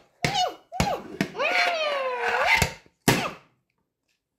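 A plastic toy horse is knocked on a wooden floor about five times, the last knock the loudest, with a child's wordless sing-song voice sliding up and down between the knocks as the horse's happy dance.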